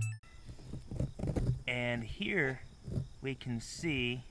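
A man's voice making a few short, indistinct utterances, with quiet gaps between.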